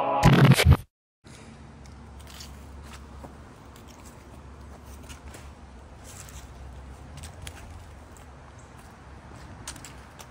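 The intro music ends with a loud final hit, then after a brief silence comes quiet outdoor ambience with scattered faint crunching and crackling, typical of footsteps on dry fallen leaves.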